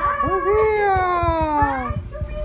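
Drawn-out vocal calls, several overlapping. The loudest starts about a quarter-second in, rises briefly and then slides down in pitch for about a second and a half.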